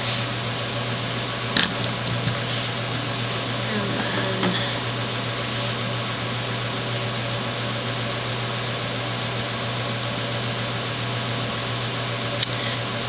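Steady background hum and hiss with a low drone, unchanging throughout, and a single sharp click about one and a half seconds in.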